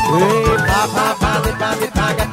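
Sinhala pop band playing a nonstop medley live: a steady quick beat under a lead melody that bends in pitch.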